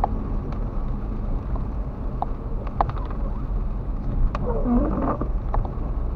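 Car driving on a wet road in the rain, heard from inside the cabin: a steady low road and engine rumble with scattered sharp ticks of raindrops on the windscreen. A brief rubbing sound comes about five seconds in.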